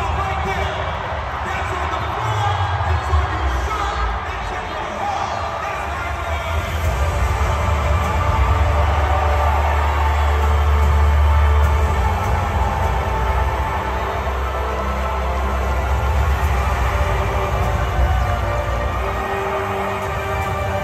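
Music played loud over an arena's PA system, with deep bass that swells in the middle, over a large crowd cheering.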